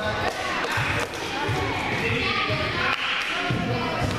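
Spectators' voices in an echoing gym, with a few basketball bounces on the hardwood floor.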